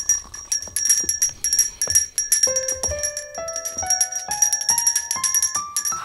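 A small handbell shaken rapidly and repeatedly, ringing continuously. About halfway through, a run of single musical notes climbs step by step.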